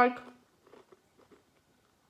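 Faint mouth sounds of chewing a chicken nugget with the mouth closed: a few soft clicks in the first second and a half, then near silence.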